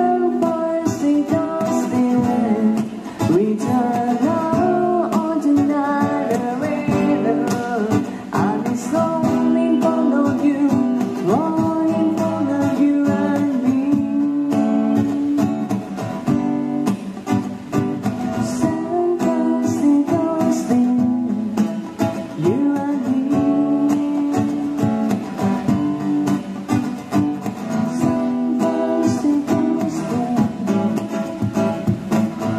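Live acoustic guitar, strummed and picked, accompanying a woman singing through a PA system.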